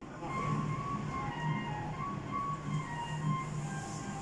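Restaurant room ambience: a steady low hum with faint background music of short, separate high notes at changing pitches.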